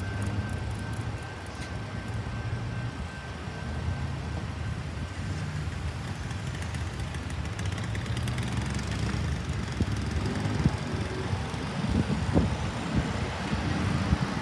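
Road vehicles running at idle while waiting at a level crossing, then pulling away. The engine noise grows louder and more uneven in the last few seconds.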